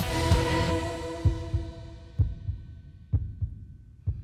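Live band playing a ballad intro: a full chord with a cymbal-like wash rings out at the start and fades over about two seconds, leaving a held note and a few spaced, heartbeat-like low drum thumps.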